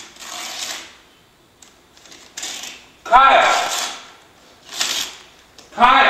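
A person's voice in short wordless calls, separated by breathy, hissy bursts about a second apart.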